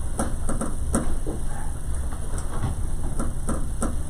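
Steady low rumble of room noise, with about ten light clicks and knocks scattered through it from things being handled on the desks.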